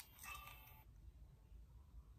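Near silence with a low room hum. There is a faint click right at the start, then a brief faint handling noise lasting under a second as fingers work a Canon G7X compact camera.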